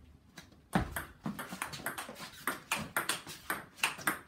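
Table tennis ball struck with a seven-ply wooden blade (the KA7 Plus) and bouncing on the table: a quick series of sharp clicks that starts about a second in and goes on several times a second.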